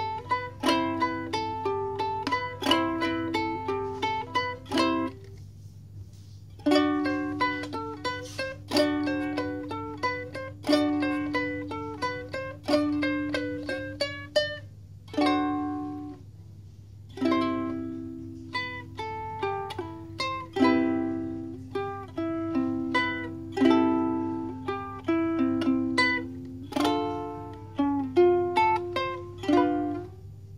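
Mahalo Kahiko ukulele, with a mahogany fingerboard and bridge and a sengon-wood neck, finger-picked: a melody of single plucked notes, broken by two short pauses about five and fifteen seconds in.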